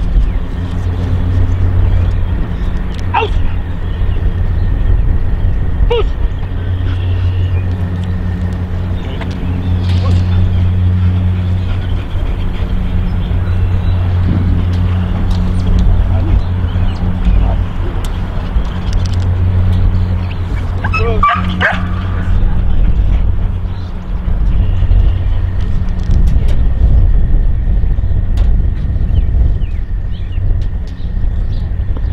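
A dog barks in a short cluster about two-thirds of the way through, over a steady low rumble that runs the whole time.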